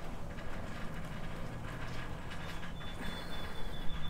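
Quiet outdoor background: a low steady rumble, with a faint thin high tone that comes in about halfway through and holds to the end.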